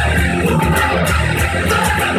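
Ibanez electric guitar played along with a loud rock recording that has drums and bass, in an instrumental stretch with no vocals. Regular cymbal-like hits run a few times a second over the continuous guitar and band.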